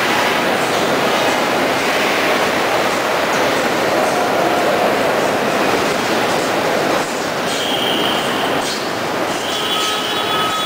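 Loud, steady industrial din on a rail coach factory's shop floor. It eases slightly about seven seconds in, and a thin high tone sounds over it near the end.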